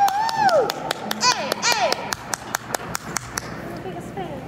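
Small audience clapping for about three seconds, thinning out near the end, with a couple of shouted, drawn-out cheers early on.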